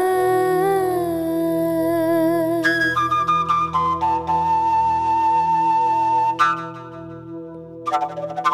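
A woman's held, wavering sung note trails off in the first couple of seconds. Then a large, low-pitched flute plays a solo phrase of held notes over a steady low backing, dropping quieter near the end.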